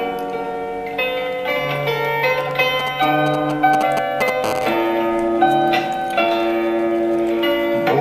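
Solo bandura being plucked: a melody of bright, ringing notes over sustained low bass strings, heard through a television speaker.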